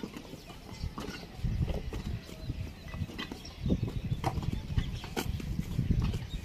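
Hands packing wet clay into a wooden brick mould and pressing it down: dull low thuds and squelching, with a few sharp knocks scattered through it.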